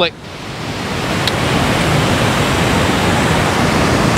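Fast white water of the Sunwapta River rapids and falls rushing. It makes a loud, even hiss that swells over the first second and a half and then holds steady.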